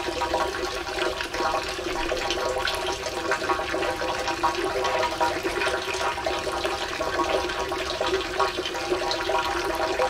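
Water pouring steadily from the spouts of wash-house fountains into water-filled stone basins, a continuous splashing with no pause or change.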